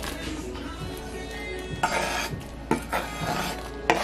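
A kitchen knife blade scraping chopped onion and scallion off a wooden cutting board into a pot, in several strokes, the loudest about two seconds in.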